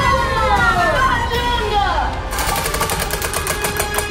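A drawn-out, falling cry from a person's voice, then from about halfway on the rapid, even clicking of a prize wheel's flapper striking its pegs as the wheel spins.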